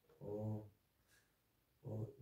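A man's voice making two drawn-out hesitation sounds, each about half a second long, one near the start and one at the end.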